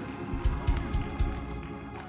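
Soft live church band backing under a pause in the preaching: sustained keyboard chords held steady, with a low bass swell in the first half.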